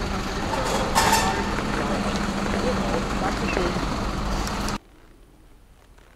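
Street noise with a truck engine idling as a steady hum and people talking nearby. It cuts off suddenly a little under five seconds in, leaving only a faint, quiet room tone.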